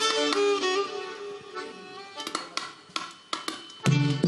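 Two violins playing a melody of a Sudanese song together. After about two seconds they drop away to a quiet stretch with a few short, sharp notes. Right at the end a louder accompaniment with deep low notes comes in.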